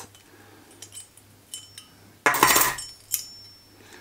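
Metal parts of an Optimus Polaris Optifuel multifuel stove clinking and clicking as the stove is taken apart by hand, with one louder metallic clatter a little over two seconds in.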